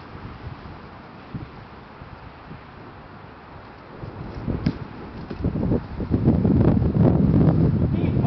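Wind buffeting the microphone, faint at first, then building to a loud, low rumble over the second half. There is a single sharp click about halfway through.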